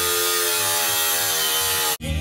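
Angle grinder cutting into a car's exhaust pipe: a steady whine over a hiss of grinding, its pitch sagging slightly under load. It cuts off abruptly at the end.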